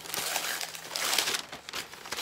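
Brown kraft paper wrapping crinkling and rustling as it is pulled open off a paperback book, loudest about a second in.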